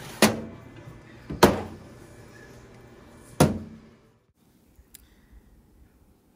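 Three sharp metallic clunks, spaced a second or two apart, each ringing briefly: a metal baking tray going into a countertop air fryer oven and the oven's glass door being shut.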